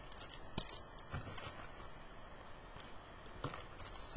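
A few light clicks and taps of trading cards being handled, scattered over a quiet background.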